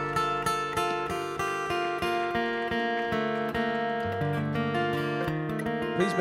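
Acoustic bluegrass band playing an instrumental break, a flat-top acoustic guitar picking quick notes over upright bass and other strings.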